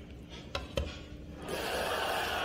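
Glass pot lid being lifted off a pan of chicken cooking on the stove, knocking lightly against the rim: two small clicks in the first second, then a steady hiss.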